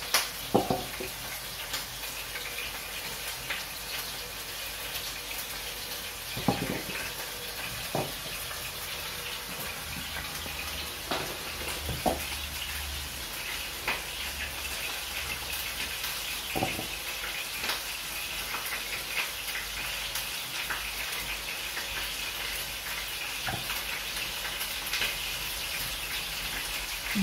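Quiet handling of fresh brown mushrooms as their skins are peeled off by hand, with about ten light knocks scattered through as peeled caps go into a plastic bowl, over a steady faint hiss.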